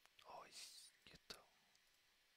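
Near silence, broken by a faint whispered word, then two quick clicks a little over a second in.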